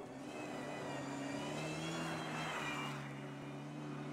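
Rally car engine at high revs as the car slides past at speed, the sound swelling to its loudest about two seconds in and then falling away.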